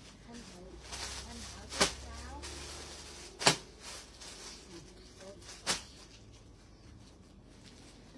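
Three sharp clicks or knocks, about two seconds apart, over faint distant voices in a room.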